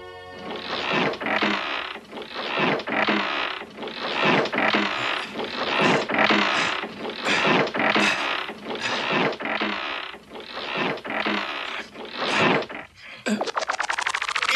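Wooden treadwheel crane turning and hoisting a stone block, the timber wheel giving a rhythmic creak and ratchet about one and a half times a second. Near the end it breaks into a fast rattle.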